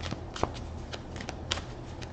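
A deck of tarot cards being shuffled by hand: a few sharp, irregular snaps and taps of the cards over a faint low hum.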